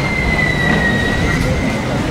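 A high, steady whistling tone lasting nearly two seconds and dropping slightly in pitch, over a low rumble of outdoor background noise.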